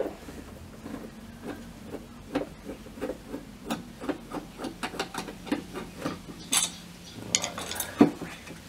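Hand screwdriver turning a screw out of a loudspeaker cabinet: a run of small clicks and scrapes, about three a second, with a sharper click near the end.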